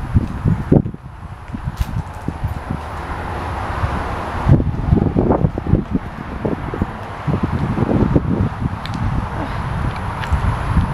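Wind buffeting a handheld phone's microphone, an uneven low rumble that comes and goes in gusts, with bumps of handling noise as the camera is moved around.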